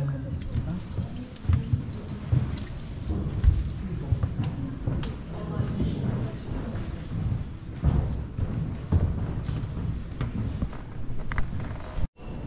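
Indistinct chatter of visitors and footsteps on a stone floor in an echoing museum hall, with irregular low thumps throughout.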